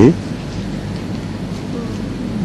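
Steady, even hiss of the recording's background noise, with no other sound standing out.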